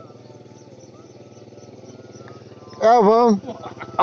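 Small motorcycle engine idling with a low, steady hum. A man's voice calls out briefly about three seconds in.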